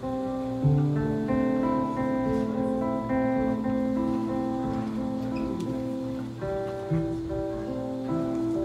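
Live band playing an instrumental passage with no singing: guitar and keyboard holding chords that change every second or so, with a low note coming in about a second in and again near the end.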